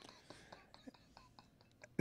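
A very quiet pause between talk: faint room tone with a few soft, scattered clicks.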